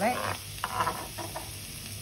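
Diced onions and carrots frying in oil in a pan, sizzling steadily. Over it, a knife chops and scrapes minced garlic on a plastic chopping board in three short bursts.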